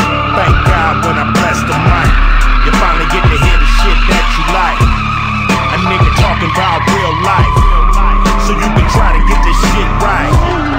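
Nissan Skyline R32 drifting, its tyres squealing in a long wavering screech. It is heard under loud hip-hop music with a heavy, regular beat.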